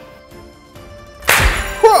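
A sudden loud burst sound effect for an on-screen transformation, about two-thirds of the way in, with a deep thud under it, dying away within half a second. Faint background music before it.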